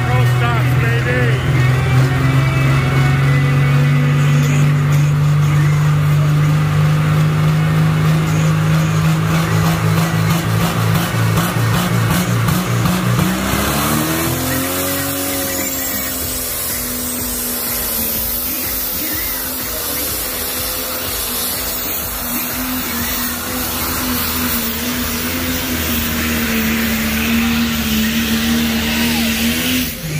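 Pulling tractor engine running at a steady, loud drone while hooked to the sled, then revving up about halfway through and holding at high revs as the pull gets under way.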